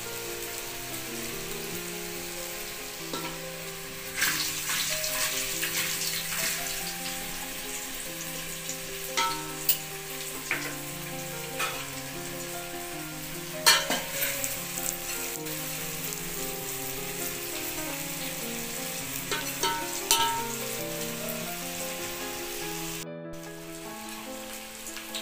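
Methi muthiya (fenugreek dough dumplings) frying in hot oil in an aluminium pot. A steady sizzle runs throughout, with sharp pops and crackles now and then; the biggest come about 4 and 14 seconds in.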